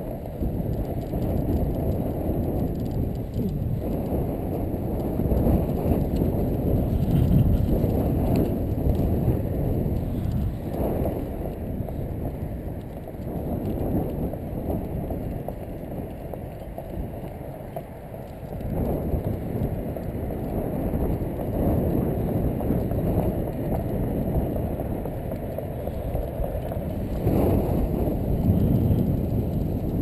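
Wind buffeting the camera's microphone: a low, unpitched rushing noise that swells and eases with the gusts.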